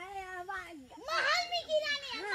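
Children's voices making drawn-out, wavering, high-pitched vocal sounds, rising higher about a second in; voices only, no other sound.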